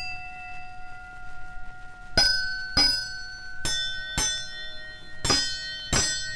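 A bell struck in pairs of strokes about half a second apart, the ring of each stroke carrying on into the next: a train-bell sound effect.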